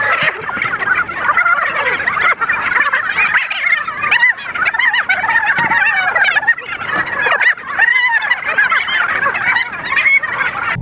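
A crowd of young people whooping and yelling excitedly all at once, many high voices wavering in pitch over one another without a break.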